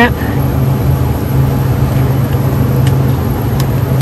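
Steady low hum of an open refrigerated supermarket display case, with two faint clicks late on as plastic food bowls are handled on its shelves.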